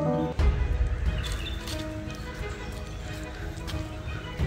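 A passage of guitar music cuts off about half a second in. It gives way to footsteps on a paved path and wind rumbling on the microphone, with faint background music still under it.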